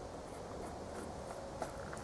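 Faint, irregular light clicks and taps, one a little louder about one and a half seconds in: small lead airgun pellets handled in their tin as one is picked out to load the rifle.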